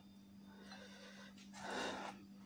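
Quiet room tone with a steady low hum. A brief soft rush of noise comes near the end.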